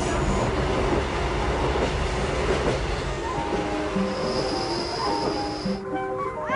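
Loud, steady rumbling noise with background music playing over it; a high steady tone joins about four seconds in, and the rumble stops just before the end.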